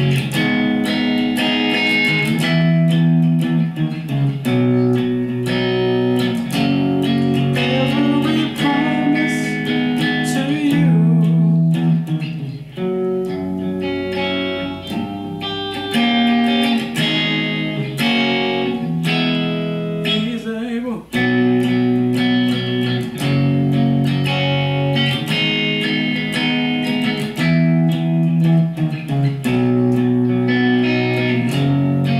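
Electric guitar playing a chord progression of B major, G-flat major, A-flat minor, E major and a G diminished chord, each chord ringing for a second or two before the next.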